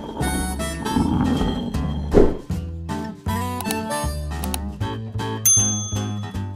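Short instrumental intro music for the logo animation, with a brief loud swell about two seconds in and a bright high ringing tone near the end.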